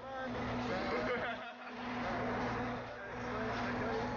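People talking over the steady low hum of an idling motor vehicle.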